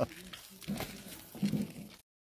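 A man chuckling softly, a few short low laughs spaced out over two seconds.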